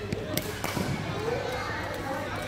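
Background chatter of voices in a large indoor sports hall, with two short sharp knocks about a third and two-thirds of a second in.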